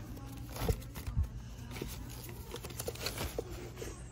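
Records in paper sleeves being flipped through in a plastic crate: a run of soft rustles and light taps, with two louder knocks about a second in.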